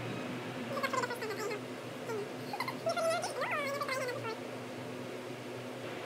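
A string of short, high-pitched vocal calls that rise and fall in pitch, from about one second in until about four seconds in. They sound over a steady room hum.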